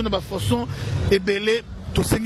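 A person speaking over a steady low background rumble.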